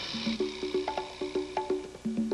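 Conga drums struck by hand in a quick solo rhythm, several strikes a second, each drum ringing briefly at its own pitch.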